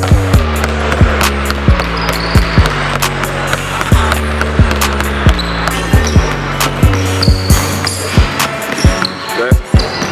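Background music with a steady bass line, over which a basketball is dribbled on a hardwood gym floor in quick, repeated bounces.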